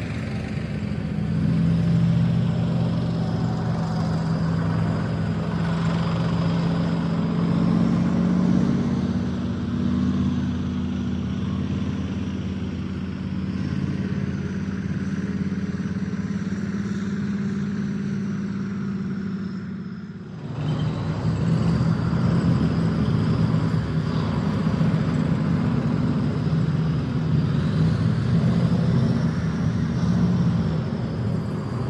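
Light truck's engine running steadily under way, heard from inside the cab with road noise. About two-thirds of the way through the engine note drops away for a moment, then picks up again.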